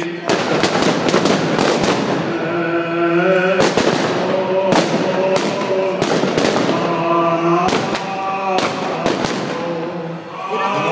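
Firecrackers and fireworks going off in a rapid, irregular string of sharp bangs, dozens of them. Between the bangs, a voice holds long, steady chanted notes.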